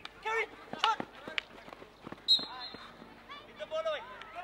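Field hockey players shouting short calls on the pitch, with sticks clacking against the ball. A loud, sharp hit comes about halfway through.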